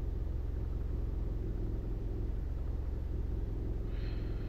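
Steady low background hum and rumble, even throughout, with no distinct events.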